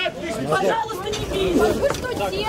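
Several people's voices talking over one another at once, with no single clear speaker.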